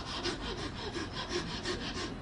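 Quick, even rubbing or scraping strokes, about seven a second, moderately loud.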